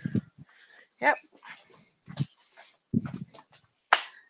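A dog making several short, separate sounds with quiet gaps between them.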